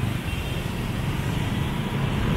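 Road traffic noise: a steady low rumble of motor vehicles on the street.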